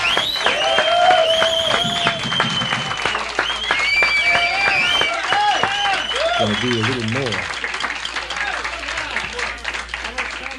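A studio audience clapping and cheering, with high shrill whistles over the applause, dying down near the end.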